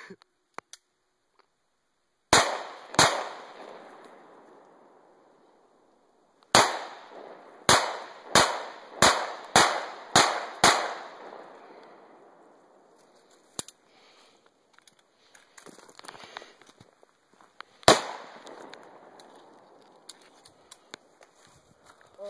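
Ruger P89DC 9mm semi-automatic pistol firing ten shots, each trailing off in a long echo. First two shots about half a second apart, then after a pause a quick string of seven at about half-second intervals, then one last single shot some seconds later.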